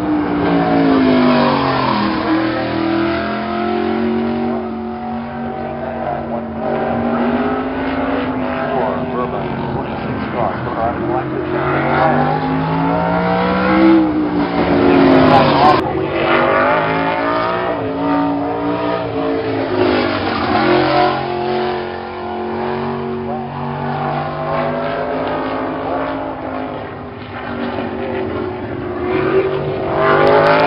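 A single race car's engine lapping a short oval, its pitch climbing as it accelerates and falling as it lifts, repeating every several seconds.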